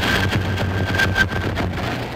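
Band saw running and cutting through a thick wooden plank: a steady mechanical hum under rough cutting noise.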